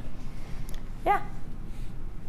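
A woman's single short, high-pitched 'yeah' about a second in, over low steady studio room noise; otherwise no other sound stands out.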